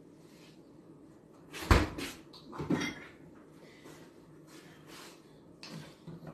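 A heavy thud about a second and a half in, then a lighter knock about a second later, amid low kitchen room noise.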